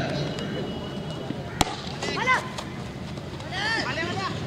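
A cricket bat strikes a tennis ball once, a single sharp crack about a second and a half in. Two short shouted calls follow, one shortly after the hit and one near the end, over steady outdoor background noise.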